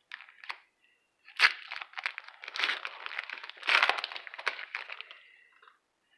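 A hockey card pack's foil wrapper being torn open and crinkled by hand: a sharp rip about a second and a half in, then about four seconds of crackly crinkling.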